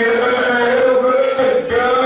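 A man singing into a handheld microphone. He holds one long, steady note for most of the time, breaks off briefly near the end, and starts a new note.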